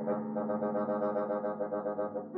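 Bassoon and piano duo playing contemporary chamber music: a held, dense chord with a fast, even flutter running through it.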